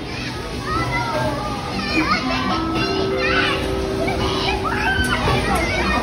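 Several children's voices calling and chattering over one another as they play, high-pitched and rising and falling in pitch.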